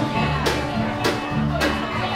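Live band playing an instrumental passage: electric guitars and drum kit, with drum and cymbal hits about twice a second over held low notes.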